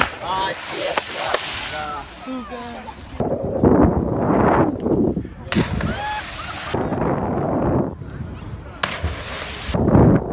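A body splashing into the sea right at the start, followed by a few seconds of water noise, with several people's voices chattering throughout.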